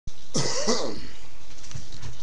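A person clearing their throat once, a short rough sound lasting well under a second.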